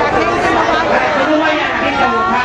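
A man speaking Spanish through a handheld microphone and PA in a large hall, with chatter from other voices.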